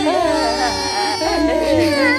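Several cartoon characters crying and wailing at once, long wavering sobs from voice actors, loud and continuous.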